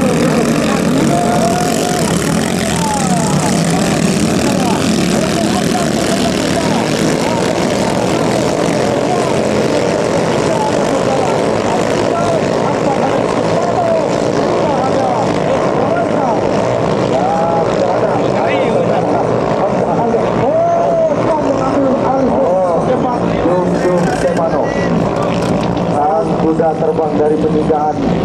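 Several 6–7 horsepower ketinting long-tail racing boat engines running at full throttle together, a dense droning whine whose pitches keep bending up and down as the boats race past.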